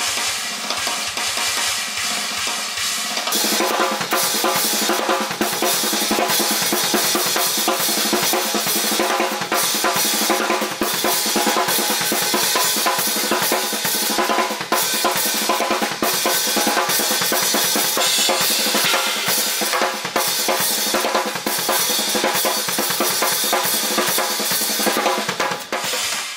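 Drum kit playing a dense, fast rhythmic pattern of kick drum, snare and cymbals. It gets louder and fuller about three seconds in.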